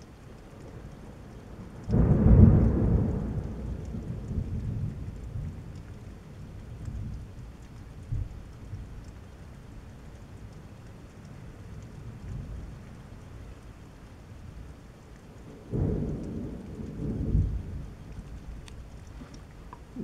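Thunderstorm with steady rain falling throughout. A loud thunderclap breaks about two seconds in and rumbles away over several seconds, and a second roll of thunder with two peaks comes about three-quarters of the way through.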